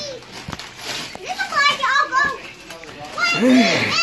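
Young children's excited voices and squeals, several at once, with a louder cry near the end, over wrapping paper crinkling and tearing.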